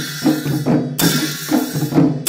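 Newar dhimay drums, one beaten by hand and one with a stick, playing a repeating rhythm with a pair of large bhusyah cymbals clashed about once every 1.3 s, one crash coming about a second in.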